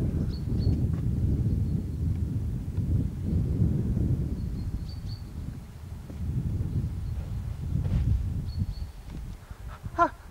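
Wind buffeting a camcorder microphone: a loud, gusting low rumble that eases briefly about six seconds in and again near the end.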